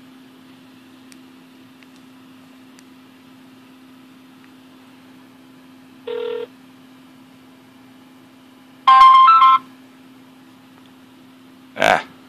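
An iPhone 5 placing a call on speakerphone: over a steady low hum, a short tone comes from the phone's speaker about six seconds in, then a louder two-step tone about nine seconds in as the call tries to connect, and a sharp click near the end.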